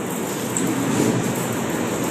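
Steady background noise, a fairly loud even hiss with no clear speech.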